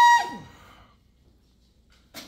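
Trumpet holding a high note in its upper register, which breaks off with a quick downward fall in pitch about a quarter of a second in.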